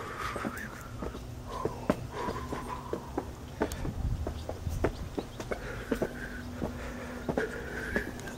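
Footsteps climbing concrete stairs, heard as many light, irregular taps and clicks.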